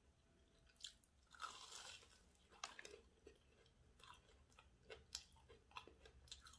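Faint close-up chewing of a mouthful of crumb-coated corn dog: scattered soft crunches and crackles of the crispy coating, with a denser stretch of crunching about a second and a half in.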